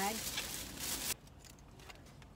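A plastic takeout bag rustling and crinkling as it is handled, for about the first second, then stopping abruptly.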